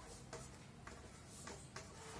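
Chalk writing on a blackboard, faint: a handful of short, separate ticks and taps as the chalk strikes and strokes the board.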